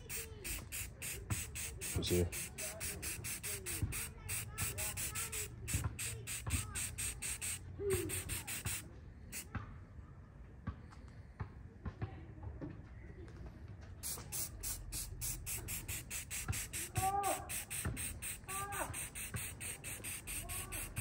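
Aerosol spray-paint can being worked: a fast, even run of short hissy pulses that stops for several seconds midway and then resumes. Now and then there are short gliding chirps from birds.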